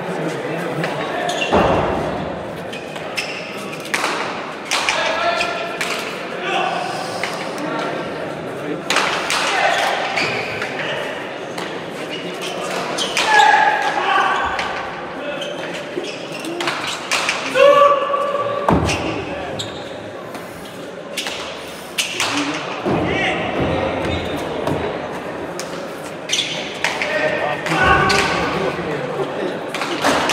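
A hard pelota ball cracking off players' bare hands and the court walls, a sharp strike every few seconds, ringing in a large reverberant hall, over spectators talking and calling out.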